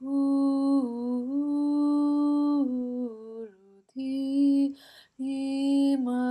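A woman's voice toning light language in long held notes, stepping and gliding down in pitch, with brief breaks between phrases.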